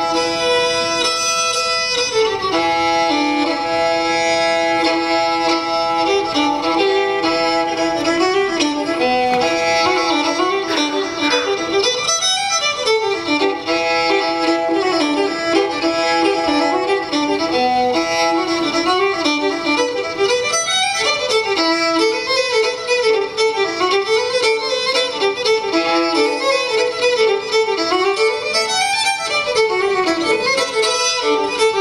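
Solo fiddle playing a lively old-time fiddle tune, a bowed melody that moves continuously up and down.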